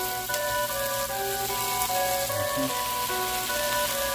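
Shrimp sizzling as they fry in a pan, under background music of held melody notes.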